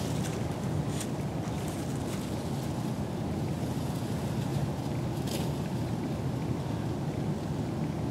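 Steady low wind noise on the microphone, with a few faint, brief rustles.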